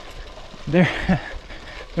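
Gravel bike rolling along a dirt trail on narrow 34c tyres: steady tyre and trail noise under a low wind rumble on the microphone. About two-thirds of a second in comes a short vocal sound from the rider.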